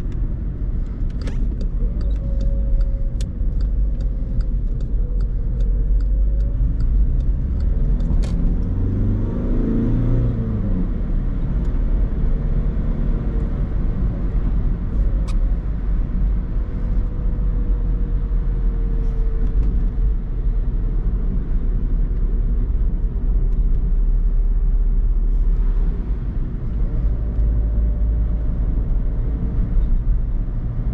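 In-cabin sound of a 2010 Skoda Fabia II's 1.6 TDI four-cylinder diesel driving steadily on a wet road: a constant low engine and road rumble with tyre noise. About ten seconds in, the engine note rises and then falls.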